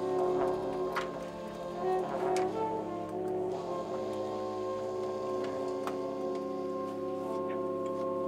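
A contemporary jazz big band playing live, with saxophones and trombones sustaining chords. A few sharp percussive hits come in the first couple of seconds, then the band holds a long steady chord.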